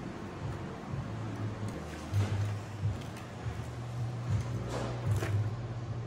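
The metal chassis of a disassembled HP TouchSmart 300 all-in-one computer being handled and lifted: a few knocks and scrapes of metal parts, about two seconds in and again near five seconds, over a steady low hum.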